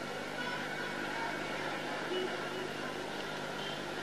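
A pause in a live recitation: steady hiss and hum from an old recording, with a faint murmur of voices from the listeners.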